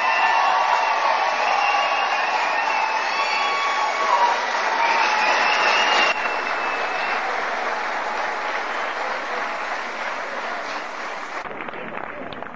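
Audience applauding and cheering, with voices calling out over the clapping in the first half; the applause then dies away gradually.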